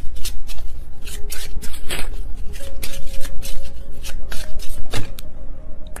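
A tarot deck being shuffled by hand: a quick, uneven run of sharp card snaps and slaps.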